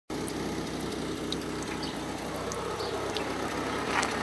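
Steady low engine hum, like a vehicle idling close by, with a steady hiss like running water over it and a few faint ticks.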